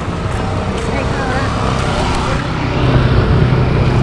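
Road traffic: a steady vehicle engine hum that grows louder about two and a half seconds in, with people talking nearby.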